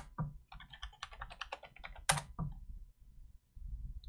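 Computer keyboard typing: a quick run of key clicks, with one louder keystroke about two seconds in.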